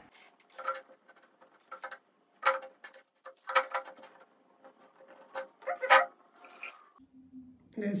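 Rustling and crinkling of a piece of fabric being handled and stretched over a glass jar's mouth to make a filter, in short irregular bursts.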